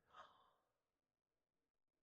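Near silence: a pause between spoken lines, with one faint breath just after the start.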